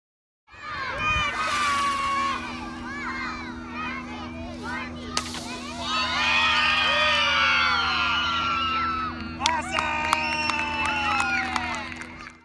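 A crowd of schoolchildren shouting, screaming and cheering for a water bottle rocket launch, starting about half a second in. A few sharp clicks sound through it, with a steady low hum underneath.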